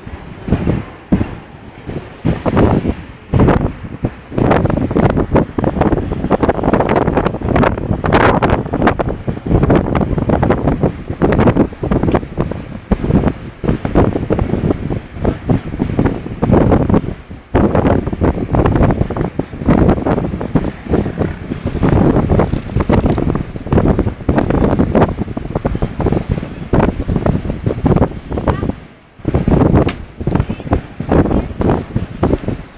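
Wind buffeting the camera's microphone in loud, uneven gusts, with ocean surf beneath.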